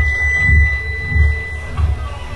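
Film soundtrack: a steady high-pitched tone held for most of the two seconds, over low deep thuds coming about every half second.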